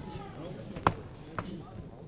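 Two sharp knocks about half a second apart, the first louder, over voices on stage.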